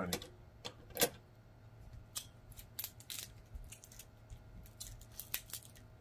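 King crab knuckle shell being cracked and picked apart by hand: a scattered series of sharp cracks and clicks, the loudest about a second in.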